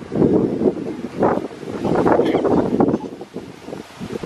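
Wind buffeting an outdoor microphone: a loud, uneven rumble that rises and falls in gusts.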